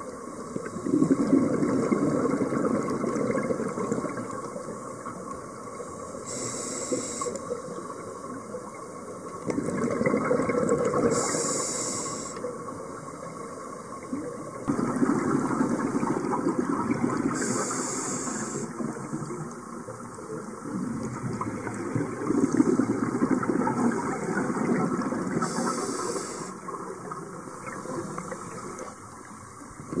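Scuba diver's open-circuit regulator breathing underwater: a short high hiss on each inhalation and a longer rush of bubbles on each exhalation, about four breaths in a slow, even cycle.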